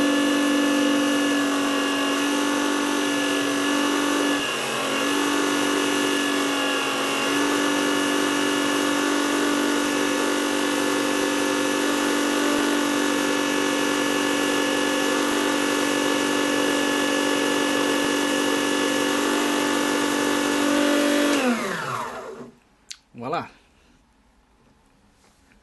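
Unimat 1 mini lathe motor running at speed with a steady hum and whine while a sanding block is rubbed on the face of the spinning Delrin rod; the pitch dips briefly twice a few seconds in. Near the end the motor is switched off and winds down with a falling pitch, followed by a short knock.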